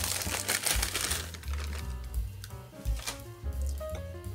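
Thin plastic cake-mix bag crinkling as it is shaken out over the bowl, densest in the first second or so, over quiet background music.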